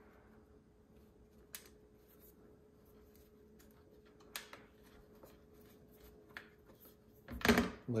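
Quiet handling of a plastic stick-on cord organizer being pressed and held onto an appliance's casing: a few faint light clicks and taps over a low steady hum, then a short louder noise near the end.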